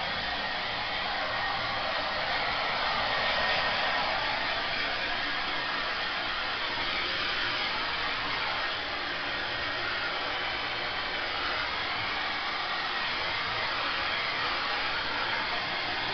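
Electric hair dryer blowing steadily while drying a small dog's coat.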